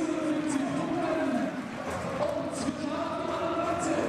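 Football crowd in the stands singing a chant together in long held notes, the tune stepping up to a higher pitch about two seconds in.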